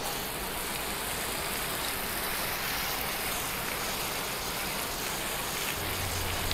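Garden hose spray nozzle spraying water onto a car wheel and tire, a steady hiss of water, rinsing off diluted Simple Green cleaner.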